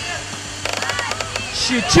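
A football striking the metal crossbar of a goal, heard as a quick run of sharp clicks lasting about a second, with faint shouting from the pitch.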